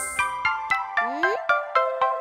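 Light, bell-like children's background music: a run of short plinking notes, about four a second, with no bass or singing. About a second in, a sound slides upward in pitch.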